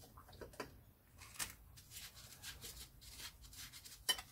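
Faint crinkling of a small clear plastic parts bag being handled, with a few light clicks, the sharpest about a second and a half in.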